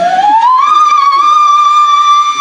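Girls singing: the voice slides up in the first half second into a long, high note and holds it steadily.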